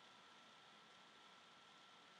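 Near silence: a faint steady hiss with a thin, steady high tone running under it.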